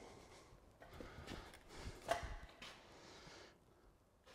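Quiet room tone with a few faint, short knocks and rustles.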